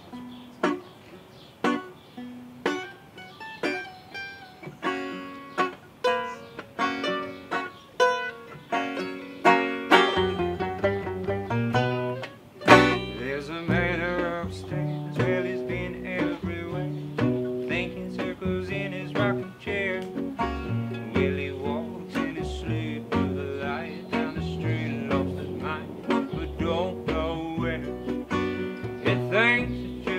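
Acoustic Americana string band playing the instrumental opening of a song, led by a plucked banjo. Sparse plucked notes sound at first; low bass notes come in about ten seconds in, and the fuller band takes over about three seconds later.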